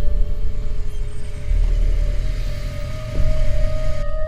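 Suspenseful film background score: one held high note that grows stronger, over a deep, pulsing low rumble.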